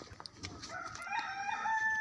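A rooster crowing: one long call that starts about halfway through, wavers briefly, then holds a steady note.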